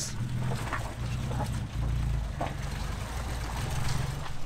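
Nissan GQ Patrol's engine running under load with its tyres spinning as it struggles up a slippery mud track. The engine makes a low, uneven drone.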